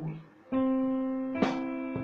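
Church music striking up about half a second in: a held keyboard chord, with one sharp percussive hit near the middle.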